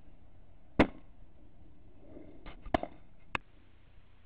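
A single sharp crack of an air rifle shot about a second in, followed near the end by a few softer, quick clicks and knocks.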